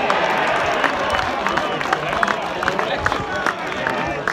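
Small football crowd cheering, shouting and clapping after a goal, with many separate hand claps standing out.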